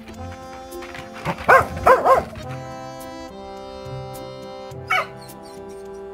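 Jindo dog barking: a quick run of three or four barks about a second and a half in, then one more bark near the end, over background music.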